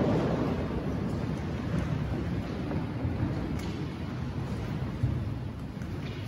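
Low rumbling room noise in a large reverberant church, with soft shuffling of people moving about and a brief knock near the start and again about five seconds in.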